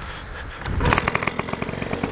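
Paramotor engine running with a fast, even pulse, getting louder about half a second in.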